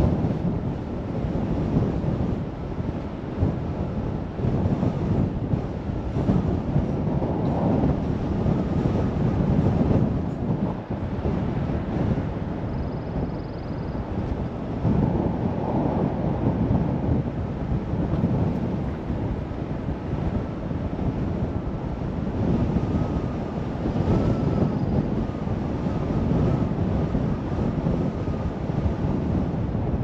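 A car driving at low speed: a steady low rumble of road and engine noise, with wind rumbling on the microphone.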